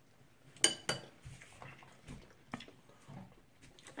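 A few light clinks of cutlery against dishes. The first, a little over half a second in, is the loudest and rings briefly; smaller taps follow over the next two seconds.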